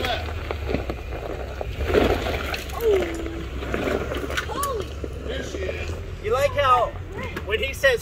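Lexus GX470's V8 engine running at low speed on a dirt trail, a steady low rumble under voices, with a short burst of rough noise about two seconds in.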